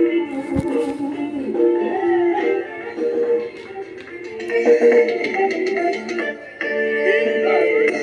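Live band music playing an instrumental song intro: a melodic lead over backing instruments, with no singing yet.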